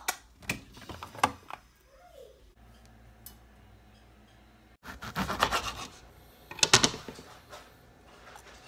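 Kitchen handling sounds. Scattered clicks come first, then rubbing and scraping about five seconds in, and a short, loud clatter of sharp clicks near the end.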